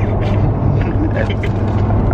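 Steady low drone of road and engine noise inside a moving car's cabin.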